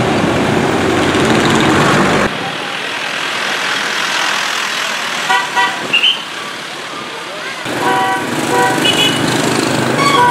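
Road traffic: loud engine and road noise from passing trucks and motorbikes, which drops abruptly to quieter traffic a couple of seconds in. Short vehicle horn beeps come twice around five seconds in, then repeatedly near the end.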